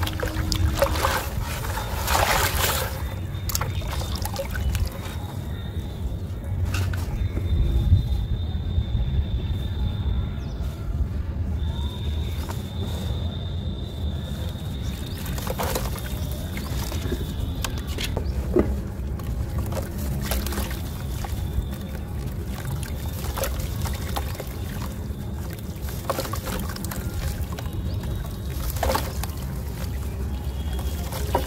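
Soft dusty sand-and-cement chunks crumbled by hand into a tub of water: grit and powder pouring and pattering into the water, with splashes and short crunches, over a steady low rumble.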